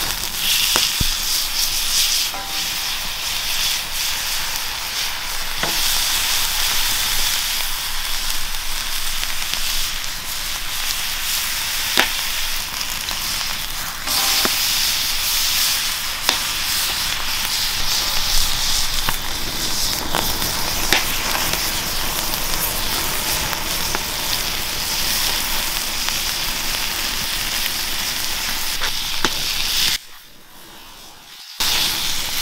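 Teriyaki-marinated beef spider steak sizzling steadily on the hot steel plate of a wood-fired fire-barrel grill, with a few sharp pops along the way.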